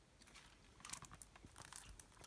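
Faint crinkling and light clicks of a shrink-wrapped plastic Blu-ray case being handled, mostly in the second half.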